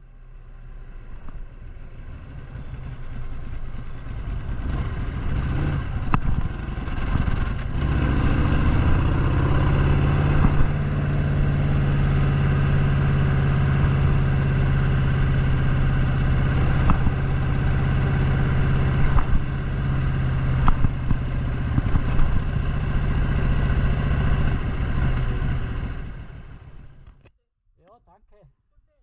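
Harley-Davidson Sportster 883's air-cooled V-twin engine running steadily under way, heard from the rider's seat. The pitch rises briefly about nine seconds in. The sound fades in at the start and fades out near the end.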